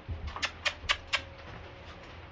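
A horse's hooves stepping on gravel as it is led up to the trailer: about five sharp crunching steps in the first second or so, then it goes quiet.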